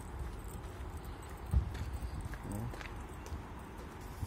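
Handling noise on a hand-held phone microphone while walking: a low rumble with small knocks, and one sharper thump about a second and a half in.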